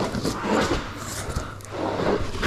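A rolled-up BedRug truck bed mat, with a thick, squishy carpet-like surface, rustling and scuffing against hands and sleeve as it is unrolled and handled.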